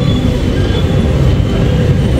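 Steady low rumble of motor-vehicle engines in street traffic, close to the microphone.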